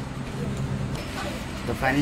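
A steady low mechanical hum, like a household fan or appliance running, and a man's voice starting near the end.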